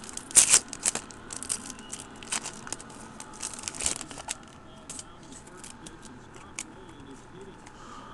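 Foil wrapper of a trading-card pack being torn open and crinkled by hand: irregular crackles and rips, busiest in the first four seconds and thinning out toward the end.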